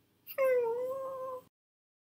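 A cartoon character's voice making a short wordless vocal sound, about a second long, with a brief squeak at its start and a pitch that dips slightly and then holds steady.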